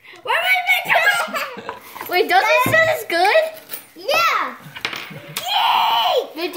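Children's high, excited voices calling out over one another, without clear words, with a louder, rougher cry near the end.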